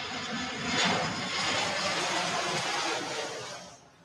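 Jet aircraft noise, a steady rushing roar that swells about a second in and fades away near the end.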